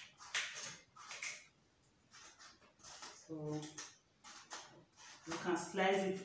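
A kitchen knife slicing through a cucumber on a plate: a few crisp, sharp cuts in the first second and a half.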